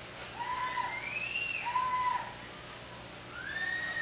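High whoops or whistle-like calls from a club audience between songs: four separate calls, each rising then falling in pitch over about half a second. A faint steady high whine fades out in the first second and a half.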